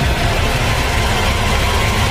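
Loud, steady low rumble with a hiss over it.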